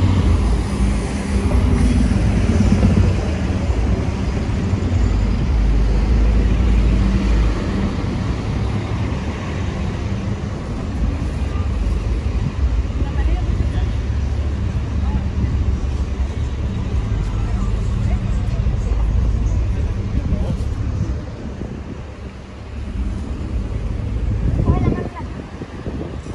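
Busy downtown street traffic: cars and buses running and passing, a steady low rumble, with passersby's voices now and then.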